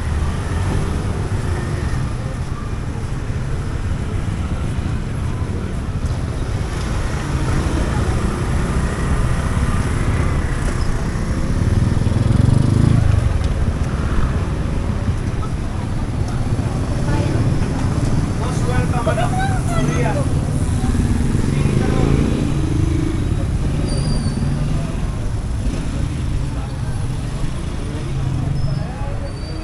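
Street traffic close by: motorbikes and cars passing in a steady rumble, swelling as a vehicle goes past about twelve seconds in. Passers-by's voices chatter in the mix, clearest a little after the middle.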